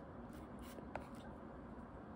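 Hard plastic stylus nib on an iPad's glass screen: faint strokes of writing and one sharp tap about a second in.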